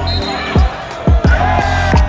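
A basketball bouncing on a hardwood court: several heavy thuds at uneven intervals, over music playing through the gym's sound system.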